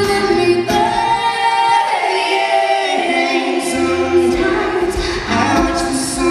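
Live pop song: a man and a woman singing long held notes together over acoustic guitar. The low accompaniment drops away for about two seconds midway, leaving the voices almost alone, then comes back in.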